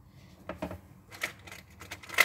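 A few small sharp snips and clicks of a cutting tool working at hardened glue on a bracelet chain; the blade is too blunt to cut the glue away cleanly.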